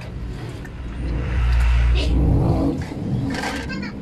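A passing motor vehicle's low rumble, swelling about a second in and fading toward the end. Brief scraping of a cleaver and hands on meat in a steel basin comes near the end.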